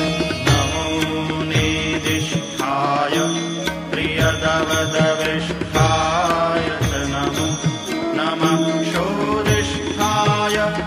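Sanskrit hymn to Shiva chanted in a singing voice over instrumental accompaniment, with a regular drum beat underneath.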